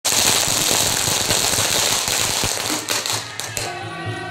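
A string of firecrackers crackling in a dense, continuous run that thins out and dies away about three seconds in. Near the end, music with steady held notes comes in.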